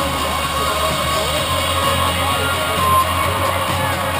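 Loud amplified concert music over a big PA, heard from far back in a large venue, with a steady deep bass and a crowd shouting and cheering along.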